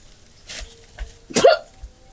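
A woman's short, sharp vocal catch, like a hiccup, about one and a half seconds in, with fainter breathy sounds before it.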